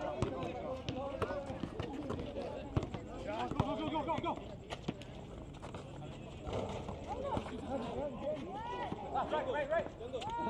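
Several voices calling and talking on an outdoor basketball court, with scattered sharp knocks of a basketball bouncing on concrete.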